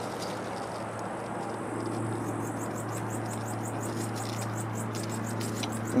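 High-pitched insect chirping, a rapid, even run of short pulses starting about two seconds in, over a steady low hum.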